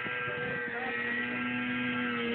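Distant two-stroke Polaris Indy 500 snowmobile engine running at a steady high pitch as the sled skims across open water.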